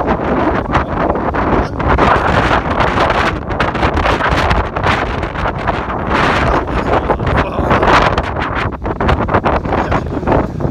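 Loud, continuous rumbling and rustling noise on a handheld phone's microphone as the phone is jostled about.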